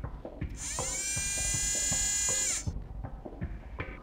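A robot's servo motors whine for about two seconds as it reaches out its arm. The whine glides up as it starts and falls away as it stops, with light mechanical clicks and ticks around it.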